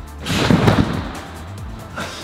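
Background music with a heavy thump about half a second in, from a gymnast's twisting somersault off a trampoline into a foam pit.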